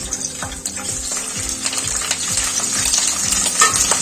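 Cauliflower florets dropped into hot oil, sizzling, the frying hiss growing louder as more pieces go in. A steady beat of background music runs underneath.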